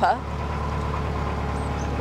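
Narrowboat engine running steadily under way, an even low drone.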